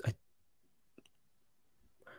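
A brief spoken "I...", then near silence with a single faint computer mouse click about a second in.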